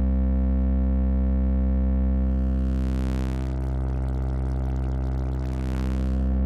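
Cosmotronic Vortex complex oscillator holding a low, steady synthesizer drone. From about halfway through, a gritty, hissy edge comes in on top as its controls are turned, and it fades just before the end.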